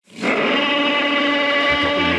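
Tyranitar's cry from the Pokémon games: one steady, loud electronic roar about a second and a half long that fades near the end.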